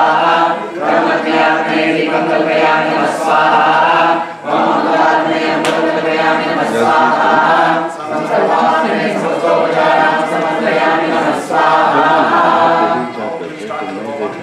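A group of voices chanting Vedic mantras in unison for a homam fire ritual, in steady phrases a second or two long with short breaks between them.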